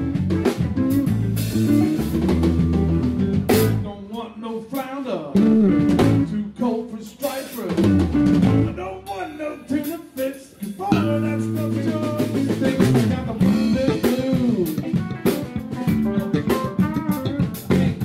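Live blues band playing an instrumental passage on electric guitar, bass guitar and drum kit. About four seconds in, the bass and low end drop away, leaving bent guitar notes over the drums, and the full band comes back in about eleven seconds in.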